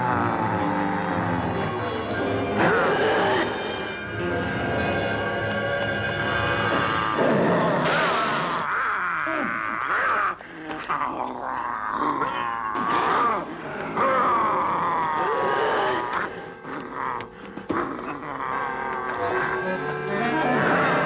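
Dramatic orchestral horror film score with the werewolf's snarling roars and growls, a man's voice acting the beast, wavering in and out from about seven seconds in.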